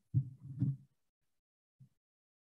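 Low, muffled thumps and knocks of a person moving at a wooden lectern and stepping away from it, picked up by the lectern microphone. A cluster of several knocks falls in the first second, followed by a faint single knock near the end.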